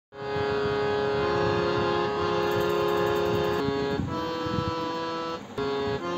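Electronic keyboard played on a reedy, harmonium-like voice: slow held notes with overlapping tones, the melody stepping to a new note every second or so, with a short break near the end.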